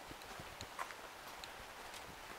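Footsteps of a person walking on a paved street, hard shoes tapping in an even stride of about two to three steps a second, with a few small sharp clicks.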